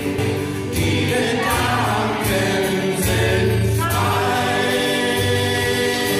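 Two men singing a folk song together to acoustic guitar accompaniment, with long held notes.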